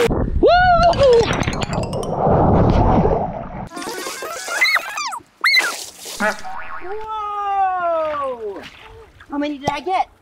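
A body sliding fast down a wet inflatable slip-and-slide, a steady rushing swish of water and vinyl lasting about three seconds, with whoops and shouts over it. A hiss of spraying water and short cries follow, then a long falling whoop near the end.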